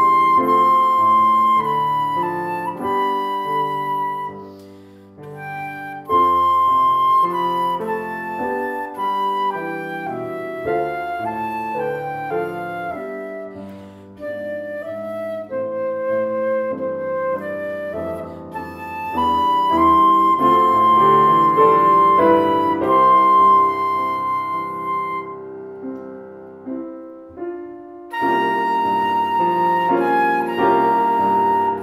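Concert flute playing a melody of long held notes, accompanied by grand piano. Near the end the flute falls away and there is a short break before both come back in.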